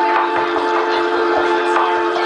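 Live band music, recorded from the room: a sustained chord held over a steady low beat, about two hits a second.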